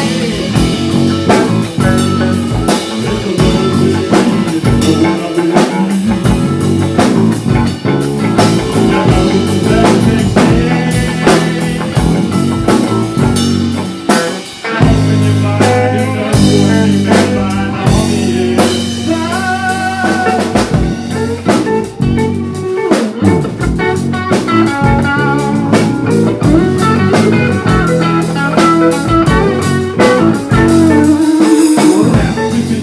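Live band playing an instrumental passage with no vocals: a drum kit keeps up steady hits and cymbal strokes under electric guitars and bass. The loudness dips briefly about halfway through.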